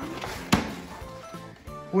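Background music with a light stepwise melody. About half a second in, a single sharp knock as the digital piano's hinged key cover is lifted open.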